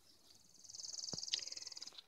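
A high-pitched, rapid trill of evenly spaced pulses from a small animal, lasting about a second and a half and growing louder before it stops. A faint tap comes partway through.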